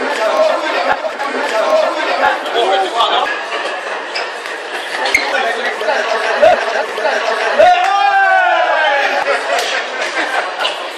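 Chatter of a group of onlookers in a large hall, several voices talking over each other. One voice calls out loudly near the end, and a few faint knocks come through the talk.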